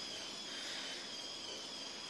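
Faint steady room tone of a laundrette: an even hiss with two thin, high-pitched whines held steady throughout.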